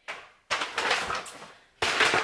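Brown paper mailer bag rustling and crinkling as it is picked up and handled: one stretch of crackling that fades out, then a sudden louder burst of crinkling near the end.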